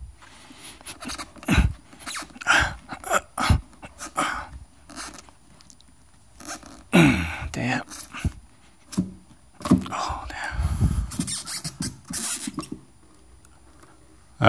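A heavy sealed lead-acid battery being wrenched out of a speaker's wooden battery compartment against double-sided tape: irregular scrapes, knocks and ripping. A man's straining grunts and breaths come in between, one about halfway through.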